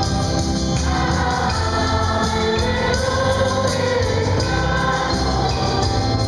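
Live amplified church song: a man singing through a microphone, accompanied by an electric keyboard and guitar, over a steady bass.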